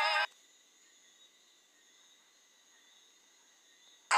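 Background music with a sung vocal, played back from the phone's editor, cuts off abruptly about a quarter of a second in. Near silence follows, with only a faint steady high tone, until the music starts again at the very end.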